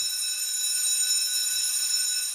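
Electric school bell ringing steadily, a single unbroken ring.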